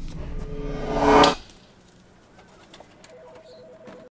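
Music: a held chord swells to its loudest just after a second in, then cuts off abruptly. Quiet follows, with a faint two-note tone held near the end.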